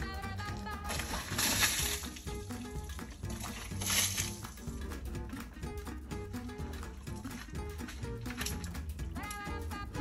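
Background music, with two short bursts of rushing noise about a second and a half and about four seconds in.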